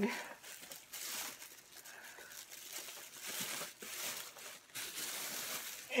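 A shopping bag rustling and crinkling as items are rummaged out of it, in irregular bursts with a few light knocks.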